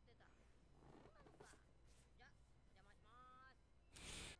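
Near silence, with faint, low-level voices talking, the clearest about three seconds in.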